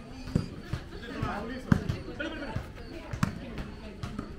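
A volleyball thumping several times at uneven intervals, the loudest thump a little under two seconds in, with voices talking in the background.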